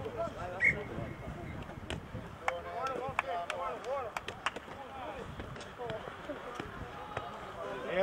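Several voices shouting short calls across a rugby pitch during play, mostly distant and overlapping, with scattered sharp clicks between them.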